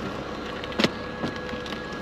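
Steady background noise with a faint hum, and a single sharp click a little under a second in, with a few fainter ticks after it.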